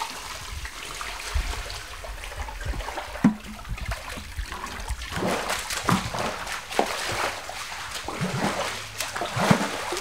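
Water poured from a plastic bucket splashing into a concrete tank, then a paddle sweeping through the spirulina culture in repeated splashing strokes from about halfway through.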